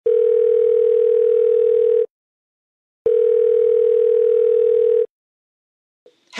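Telephone ringback tone: two long steady beeps of about two seconds each, a second apart, the sound of a call ringing out before it is answered.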